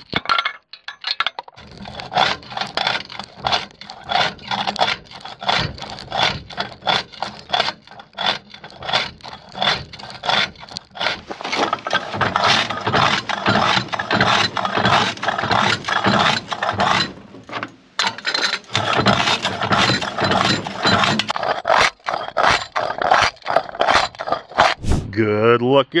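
Quartz ore being crushed in a lever-operated Crazy Crusher rock crusher: a rapid, regular run of crunching and scraping strokes, about three a second, as the rock grinds between its steel jaws.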